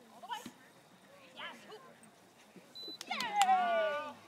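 Short high-pitched calls, then near the end a loud, drawn-out cry that slides down in pitch.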